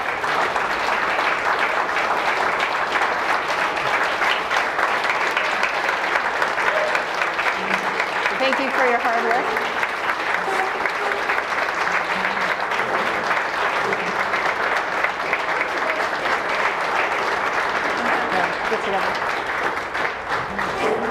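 Audience applauding steadily and at length, with a few voices heard under the clapping.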